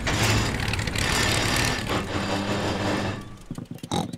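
Cartoon sound effect of a small motor boat's engine running under a rushing swish as the boat drives into long reeds; it dies away a little after three seconds in as the boat comes to a stop, stuck in the reeds.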